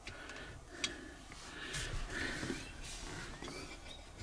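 Faint handling of a phone in a plastic windshield phone mount: soft rustling and a couple of sharp clicks, the clearest about a second in.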